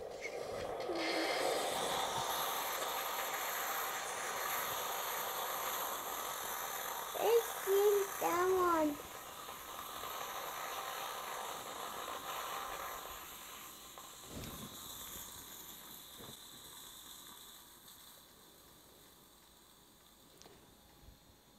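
Tassimo Style pod coffee machine dispensing hot frothed milk into a glass: a steady hissing pour that eases off after about thirteen seconds and fades as the brew cycle ends.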